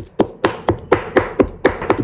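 Cleaver chopping pork into mince on a wooden cutting board, steady strokes about four a second, with scallion, ginger and garlic being chopped into the meat.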